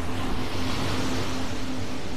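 Black Sea surf breaking and washing up a sandy beach: a steady hiss of waves, with a faint low steady hum underneath.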